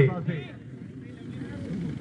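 A man's commentary voice breaking off at the start, then a pause filled by low, steady open-air background noise with faint distant voices.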